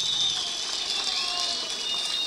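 Audience applauding: a steady patter of many hands clapping, with a faint thin high tone running through it.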